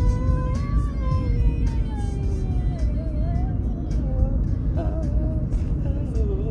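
A singer holding a long note that slides slowly down in pitch and then wavers, over backing music with a heavy, steady low rumble underneath.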